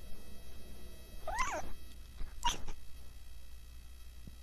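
Domestic cat giving two short calls into a microphone held at its mouth, about a second apart; the first wavers up and down in pitch, the second is briefer.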